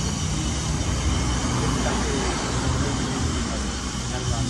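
Steady low outdoor rumble with hiss, with faint voices in the background.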